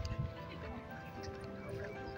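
Music with singing voices holding long, overlapping notes, and a few soft knocks just after the start.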